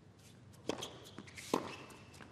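Tennis ball struck twice by rackets: a serve, then the return from the other end of the court a little under a second later.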